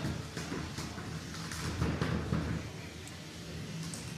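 Combat robot arena sound: a steady low hum under a noisy background, with a few faint knocks and clatters around the middle.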